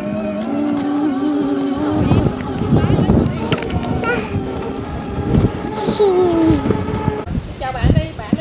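Battery-powered children's ride-on toy car driving: its electric motors whir with a steady pitch while the plastic wheels roll and crunch over grass and concrete.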